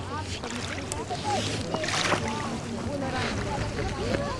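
A flock of swans and gulls calling at the water's edge: many short rising and falling calls overlapping one another, over a steady rush of wind and small waves on the shore. Two louder noisy bursts come about two and three seconds in.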